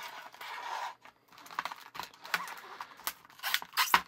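Stiff clear plastic blister packaging being bent and pulled open: a rustle in the first second, then, after a brief pause, a string of sharp clicks and crackles.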